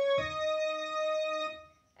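Digital piano: a held C-sharp is followed just after the start by a struck E-flat, a step higher, which rings and fades out about a second and a half later.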